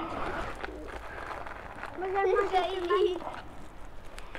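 Quiet talk from people in a small group, with one high voice speaking for about a second, about two seconds in.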